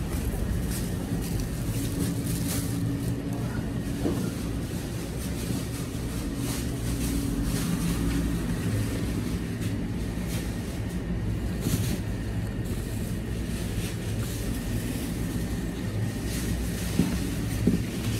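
Steady low rumble and hum of store background noise, with a couple of short knocks near the end.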